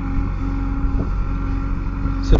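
JCB backhoe loader's diesel engine running steadily at working revs as its backhoe arm digs out a pit.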